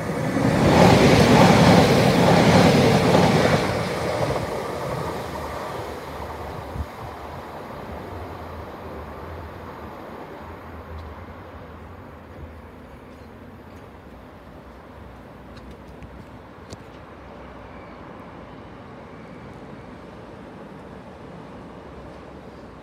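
Diesel multiple-unit passenger train running through the station at speed without stopping: a loud rush of engine and wheels for about four seconds, then fading away over the following seconds to a low rumble.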